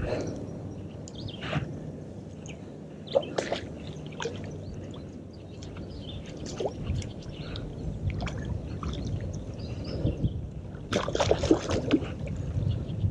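Water sloshing and dripping from a carp shot with a bowfishing arrow, thrashing in shallow muddy water on the taut line, with scattered splashes and a louder burst of splashing about 11 seconds in.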